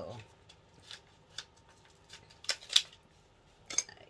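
Scattered short rustles and clicks of small packaged items being handled while rummaging in a bag, loudest a little over halfway through.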